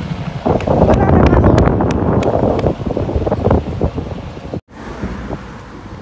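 Strong wind buffeting a phone's microphone in loud, gusty rushes. It cuts off abruptly a little past halfway, giving way to a much quieter background of road traffic.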